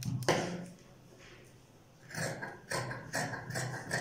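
Tailor's shears cutting through heavy wool fabric on a cutting table: a sharp click about a third of a second in, then a run of short crunching snips, a few a second, in the second half.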